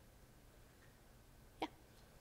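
Near silence, room tone, broken by one brief, sharp click-like sound about one and a half seconds in.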